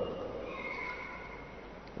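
A pause in speech: faint background room noise with a faint, high, steady whine.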